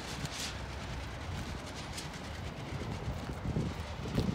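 Steady low outdoor rumble with some wind on the microphone, and a few faint clicks.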